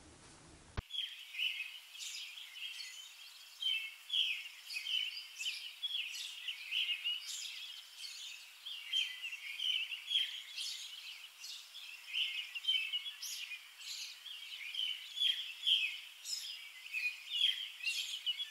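Small birds chirping, a busy, continuous chorus of short, high chirps with no low end, starting suddenly about a second in.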